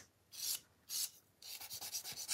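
Two short scrapes, then quick back-and-forth strokes of a nail file being rubbed, faint.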